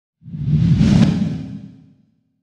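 A single whoosh sound effect with a deep rumble underneath, as used for a logo reveal: it swells in quickly, peaks about a second in and fades away by the end.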